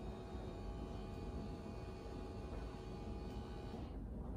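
Dishwasher running a cleaning cycle: a faint, steady low hum and hiss with thin steady tones that stop shortly before the end.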